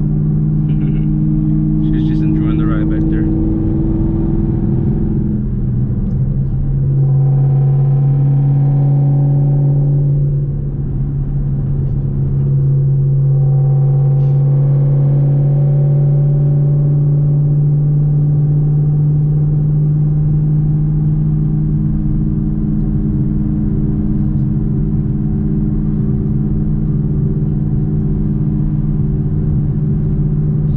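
Chevrolet Camaro engine and long-tube header exhaust, heard from inside the cabin while cruising, a steady drone. Its pitch steps down and it gets louder about six seconds in, it dips briefly around ten seconds, then it holds steady. The owner says the car has a small exhaust leak at the mid-pipe clamps, which he calls not drastic.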